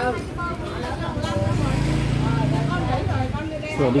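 Small motorbike engine passing close by: a low steady hum that swells about a second and a half in and fades after about three seconds.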